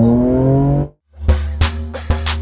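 2009 Acura TL's V6, with a modified exhaust, accelerating, its note rising steadily until it cuts off abruptly about a second in. After a brief gap, intro music with a heavy drum beat and bass starts.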